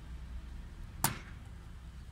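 One short, sharp click about a second in, as a finger works the push-pull circuit breakers on an airliner's circuit breaker panel, over a low steady rumble.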